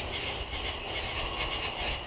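Night insects, likely crickets, chirring steadily in a pulsing chorus of about four to five pulses a second, over a low rumble.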